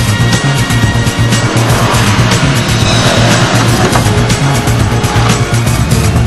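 Soundtrack music with a steady beat, mixed over a 2004 Subaru WRX STI's turbocharged flat-four engine running hard and its tyres sliding on loose dirt.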